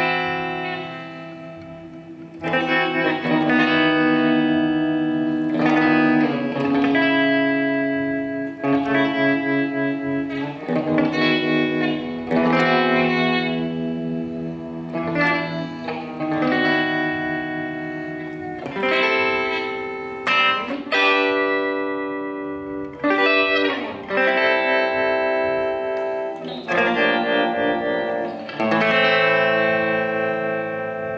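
Electric guitar played through a Soviet 'Vibrato' vibrato-tremolo pedal: chords struck about every one to two seconds and left to ring, the effect's depth varied by rocking the pedal's treadle.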